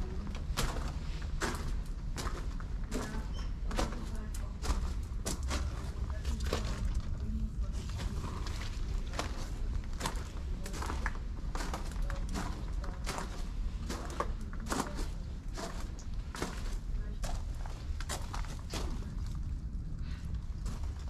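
Footsteps crunching on a gravel path, about two steps a second, over a steady low rumble.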